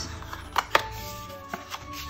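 Stiff card stock being handled and folded by hand: a few sharp paper taps and crackles, the loudest two close together a little under a second in, over soft background music.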